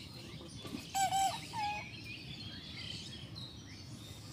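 Birds calling outdoors: two short calls, about a second and a second and a half in, over faint chirping and steady background noise.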